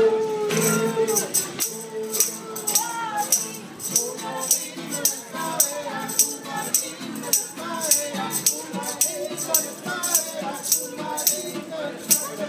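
Live klezmer band playing: a clarinet melody over acoustic guitar, with a tambourine keeping a steady beat of about two hits a second.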